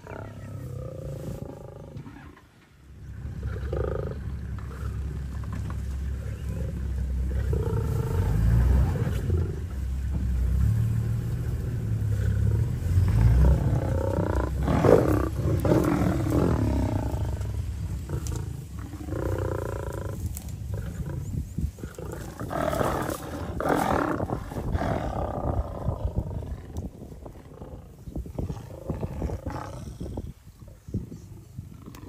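Big cats growling and snarling in repeated rough bouts, loudest around the middle, over a deep low rumble.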